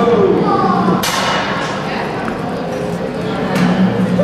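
Background voices of people in a large indoor exhibit hall, with no clear words, over a steady low hum. A sharp knock comes about a second in, and a fainter click near the end.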